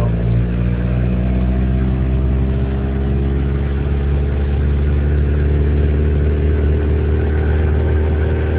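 1984 Lotus Turbo Esprit's turbocharged four-cylinder engine heard from inside the cabin, pulling steadily with its pitch rising slowly as the revs climb.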